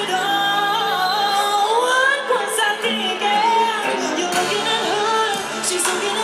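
Live pop song: a woman singing into a microphone, with long held notes that glide up and down over instrumental backing and cymbal hits.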